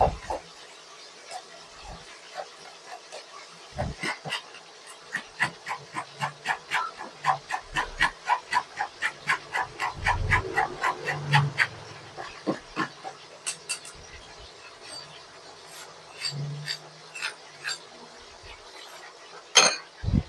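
A metal spoon scraping and pressing passion fruit pulp through a stainless-steel mesh strainer to separate the seeds, in a quick run of about three strokes a second through the middle, then slower, scattered scrapes. A sharper clink near the end.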